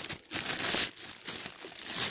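Clear plastic bag wrapped around a studio flash head crinkling as the head is handled, in irregular bursts that are loudest in the first second.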